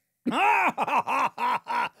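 A man's laugh: a quick run of six or seven short voiced syllables, each falling in pitch, after a brief silence.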